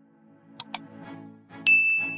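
Subscribe-animation sound effects: a quick double mouse click just over half a second in, then a bright notification-bell ding near the end that rings on for about half a second, over soft background music.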